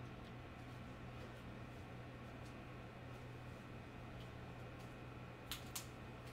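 Faint steady low hum from the bench electronic DC load, with two light clicks about half a second apart near the end, as its front-panel buttons are pressed to start a constant-current discharge.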